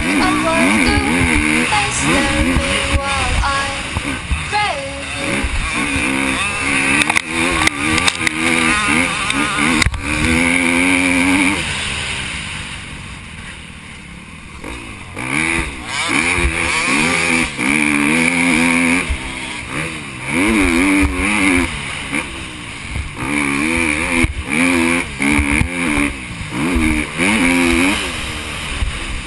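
Motocross dirt bike engine heard from the rider's helmet camera, repeatedly revving up and dropping as the rider shifts and works the throttle. The engine goes quieter for about three seconds around the middle, then picks up again.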